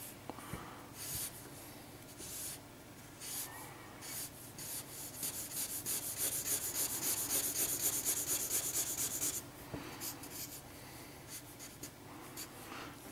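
Worn felt-tip marker rubbing over paper in rapid back-and-forth colouring strokes, scratchy and dry because the marker is worn out; the strokes come thickest and loudest in the middle stretch.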